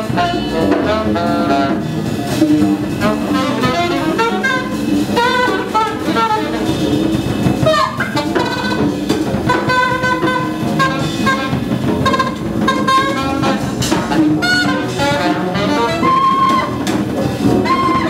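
Live small-group jazz: a saxophone plays a fast, busy melodic line over a drum kit and upright double bass.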